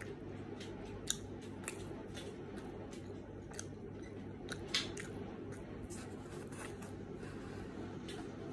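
Close-up chewing of thick-crust pizza: irregular small crunches and wet mouth clicks over a steady low hum, with two louder clicks, one about a second in and one near the middle.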